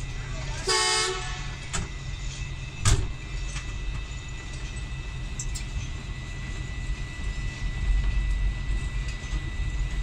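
A diesel locomotive horn gives one short blast about a second in, over the steady low rumble of the locomotive's engine heard from inside the cab. A single sharp knock follows a couple of seconds later.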